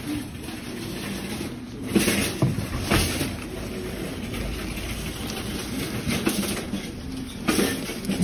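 Steady room noise with faint rustling and a few soft knocks about two and three seconds in.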